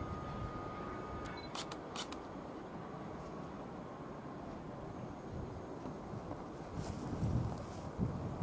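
Low, steady rumble of a distant heritage special train of old passenger coaches running away from the listener. A faint steady whine stops about a second in, and a quick run of sharp clicks follows just after.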